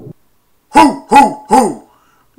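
A man's voice making three short, loud vocal calls in quick succession, each rising and then falling in pitch, starting just under a second in.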